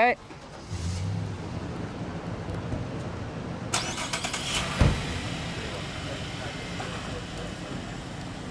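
Chevrolet Traverse SUV engine starting about a second in and then idling steadily. A car door shuts with a thump just before five seconds in.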